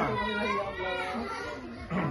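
Overlapping chatter of several people, adults and children, talking at once in the background.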